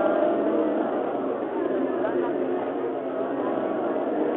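A crowd of men's voices chanting the zikr together, many overlapping voices blending into one continuous, unbroken drone.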